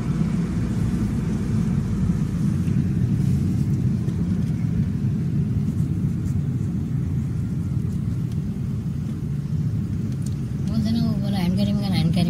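Steady low rumble of a car in traffic, heard from inside the cabin: engine and road noise with no sudden events. A voice starts near the end.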